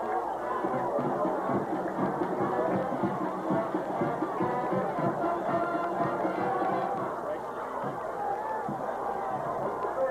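A band playing music, with crowd chatter underneath.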